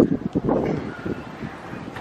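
Wind buffeting the microphone in uneven gusts, mostly low rumble.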